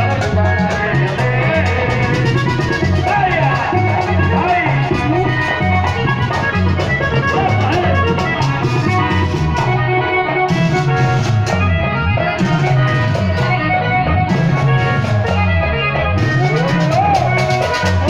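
Vallenato dance music played by a street band through a loudspeaker, with a steady, danceable rhythm.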